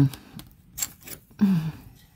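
A few short scrapes and taps of a scratcher token on a lottery scratch-off ticket, with a brief hum from a man's voice about a second and a half in.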